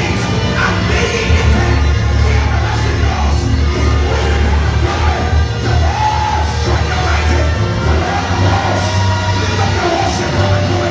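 Loud live church worship music with a heavy bass line, and a man singing over it through a microphone.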